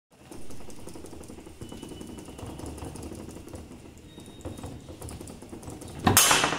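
Fireball foosball table in play: rods sliding and figures tapping the ball, a quick, uneven run of small clicks and knocks.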